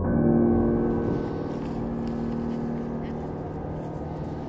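A deep gong-like tone in an eerie music soundtrack, struck at the start and slowly ringing away.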